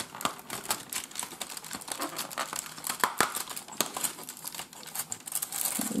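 A cardboard chocolate advent calendar being opened by hand: the card and its tray crinkle and crackle in a dense run of small clicks as a door is worked open.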